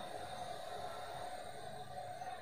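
Quiet, steady hiss with a faint steady tone: steam venting from the top of a steel puttu maker set on a cooker over a gas flame, a sign the puttu is steaming.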